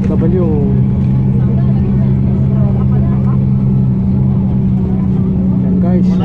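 Steady low engine hum of a motor vehicle, running at an even pitch without revving, with faint voices underneath.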